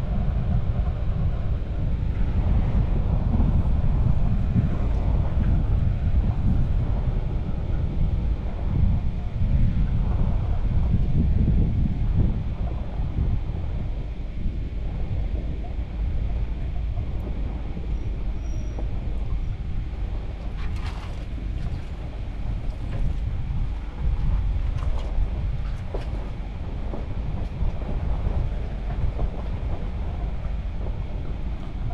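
Ram Power Wagon pickup driving along a dirt and gravel track: a steady low rumble of engine and tyres on the gravel. A few brief, higher scratchy sounds come about two-thirds of the way through.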